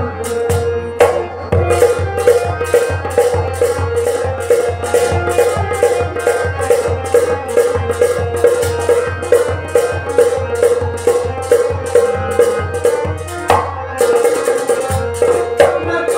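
Kashmiri folk music: a tumbaknaer (Kashmiri goblet drum) beaten in a quick, steady rhythm over a harmonium holding sustained notes. There is a brief break in the drumming a little before the end.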